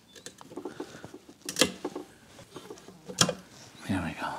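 Cutting pliers working a cracked rubber coolant hose off the metal nipple of an overflow tank: small clicks and rubbing, with two sharp snaps about a second and a half apart.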